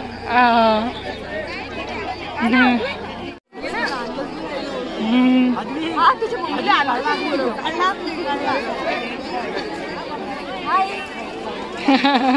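Several people chatting, voices overlapping, with one brief break to silence about three and a half seconds in.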